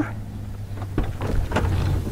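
A steady low hum, with a few faint knocks and handling clicks about a second in.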